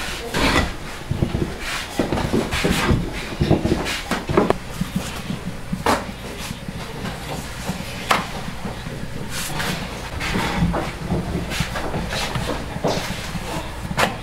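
Scattered knocks and clatter of a wooden rolling pin working dough on a floured board and of dough rounds being handled at a fire-heated iron griddle, over a steady low hum.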